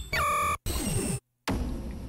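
Stock impact and sound-effect samples from Arturia Pigments' sample browser, previewed one after another in quick succession, each cut off suddenly by the next. The first is a bright tone stepping down in pitch; the next two are noisy, hissing bursts.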